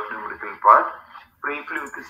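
Speech only: a person talking over a video-call connection, with short pauses between phrases.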